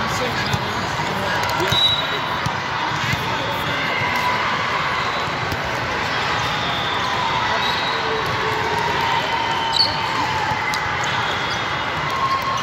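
Volleyball hall ambience: many voices chatting and calling across the hall, with scattered thuds of volleyballs being hit and bouncing on the courts. A short, sharp high sound stands out about ten seconds in.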